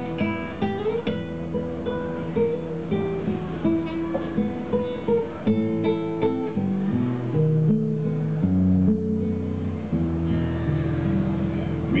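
Solo acoustic guitar playing an instrumental passage of picked melody notes and chords, with no voice.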